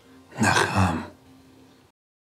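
A man's low voice says one short word, the end of a spoken line, about half a second in. A faint held low music tone runs under it and cuts off abruptly just before the end.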